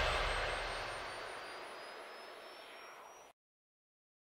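Electronic whoosh sound effect fading out at the tail of a music sting, a hiss with a faint rising whistle over it. It dies away steadily and cuts to dead silence a little after three seconds in.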